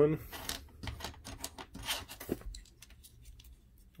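Small hard-plastic parts of a snap-together mecha model kit clicking and ticking as they are handled, a jointed plastic arm being lifted and held against the torso's hard points. A quick run of light clicks fills the first two and a half seconds.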